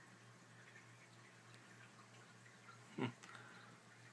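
Near silence: faint room tone with a steady low hum, broken by a man's short "hmm" about three seconds in.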